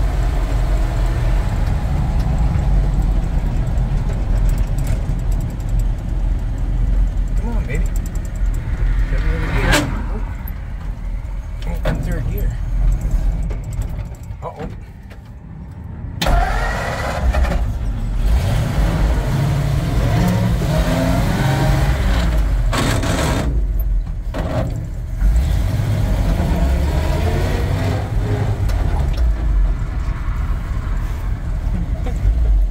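A 1948 Ford truck's engine running under way, heard from inside the cab as a steady low rumble mixed with road noise. It drops away briefly about halfway through, then comes back.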